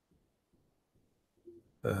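Near silence, then near the end a man starts speaking with a drawn-out "um" held on one pitch.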